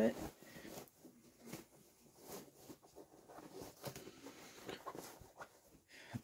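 Faint, irregular rustling of a padded fabric baby nest being handled by hand as its ties are loosened.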